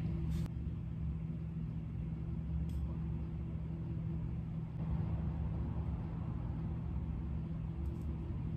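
Steady low hum of room background noise, with a faint click about half a second in and another a little before three seconds.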